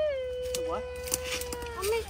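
A person's voice holding one long drawn-out vowel that sinks slightly in pitch and then stays level, with a short syllable near the end.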